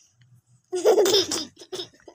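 A short burst of laughter starting about three-quarters of a second in and lasting under a second, followed by a couple of brief breathy bits.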